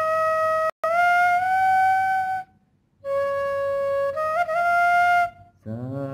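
Bamboo bansuri flute playing two slow phrases. The first note breaks off for an instant, then glides up in a meend to a held note; after a short pause, a lower held note climbs in small ornamented steps to a higher held note. A man's voice comes in near the end.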